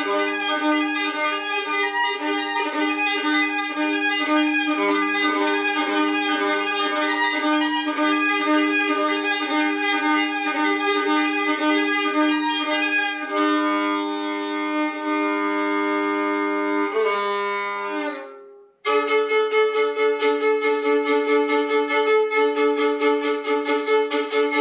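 A 1920 violin played solo by an out-of-practice player: a tune of quick, repeated bow strokes over a held lower note. About two-thirds through, the notes turn smoother and longer, fade, and cut off sharply for under a second before the quick strokes start again.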